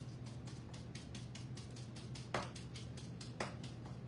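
Quick, light tapping, about six taps a second, dabbing a thin paper napkin down onto a small wooden pallet wet with Mod Podge, with two louder taps in the second half.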